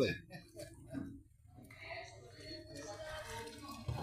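Faint, wet sounds of a wooden paddle being worked through thick, boiled-down sugarcane syrup in a large iron pan: the syrup being stirred as it thickens toward setting into rapadura.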